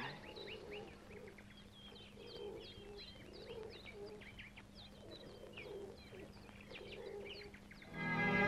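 Faint bird chirping: many quick, high chirps with lower calls repeating underneath, over a steady low hum.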